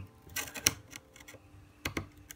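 Sharp small clicks of a rivet-removal tool popping rivets off a MacBook keyboard's metal backplate: a cluster about half a second in and another near the end.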